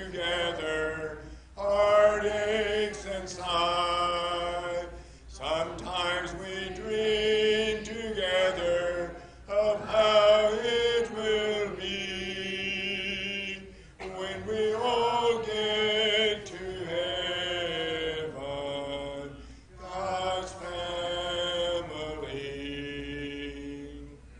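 A congregation singing a hymn a cappella, with no instruments, in held phrases of about four seconds separated by short breaths.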